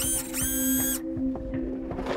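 Robot servo whine: an electronic-mechanical tone that glides up, holds for about a second and glides away. It plays over a steady, low musical drone.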